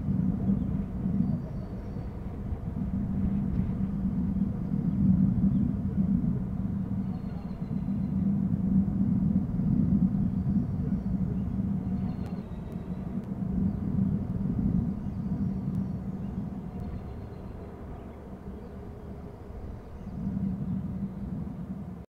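Low, uneven rumble of wind buffeting an outdoor nest-camera microphone, rising and falling in strength. A few faint, short high-pitched bird calls come through now and then.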